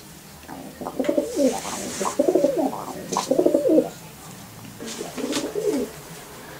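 Domestic pigeon cooing: a run of repeated falling coos lasting about three seconds, then a shorter bout near the end.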